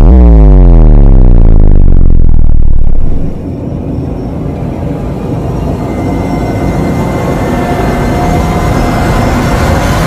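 A loud, deep power-down sound effect whose pitch falls steadily for about three seconds, like a tape stop. It gives way to a quieter sustained electronic drone with faint steady high tones.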